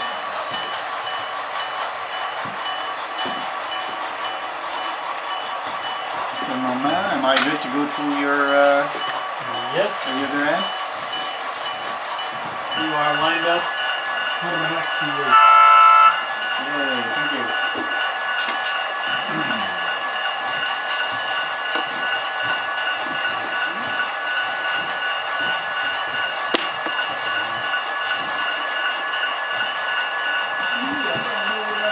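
HO scale model freight train running slowly through a layout yard, with a steady electrical hum under it. A single loud held tone of about a second sounds about halfway through, and there are brief low voices around a quarter and just under halfway in.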